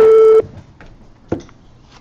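A loud electronic beep: one steady, unwavering tone lasting about half a second, followed about a second later by a single short click.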